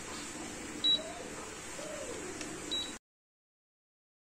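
Keypad beeps from an Inhemeter prepaid meter's customer interface unit as token digits are keyed in: two short high beeps about two seconds apart over a low hiss. About three seconds in, the sound cuts to silence.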